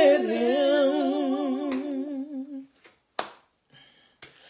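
A woman humming an unaccompanied gospel line: one long wavering note with vibrato that dies away about two and a half seconds in. A brief breathy sound follows near the end.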